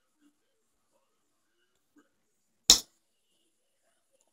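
Near silence, then about two-thirds of the way in a single sharp smack as a fist gripping a plastic drinking straw drives it down onto the other hand. The straw bends instead of going into the hand.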